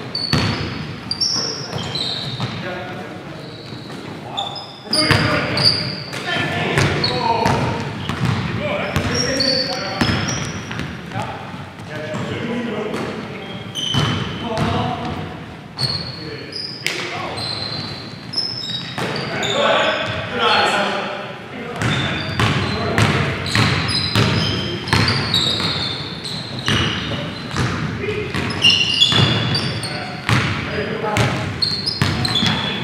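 Basketball game sounds in a large, echoing gym: a basketball bouncing on the hardwood floor, sneakers squeaking in short high chirps, and players' voices calling out.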